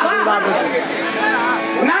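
A male performer's voice in a Bhojpuri dugola show, rising and falling in pitch, with music playing behind it.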